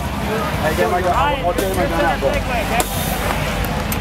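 Men's voices shouting and calling out over one another, over a steady low hum.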